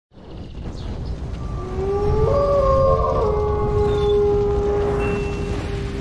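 Wolf howl in an intro animation: a rising call about a second and a half in that settles into one long held note, over a steady low rumble.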